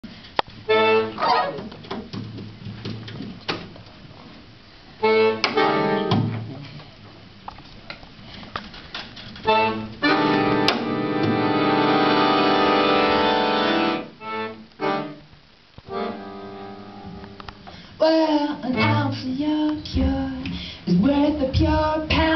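Piano accordion playing an introduction: short chords struck with pauses between them, one long held chord about halfway through, then busier playing near the end.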